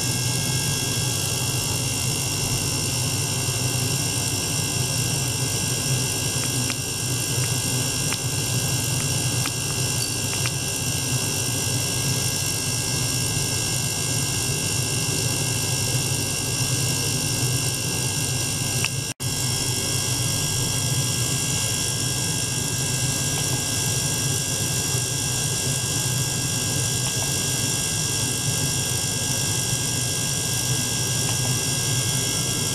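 Small ultrasonic cleaner running with water circulated through its tank by a small pump: a steady low hum under a cluster of steady high whining tones. The sound drops out for an instant about 19 seconds in.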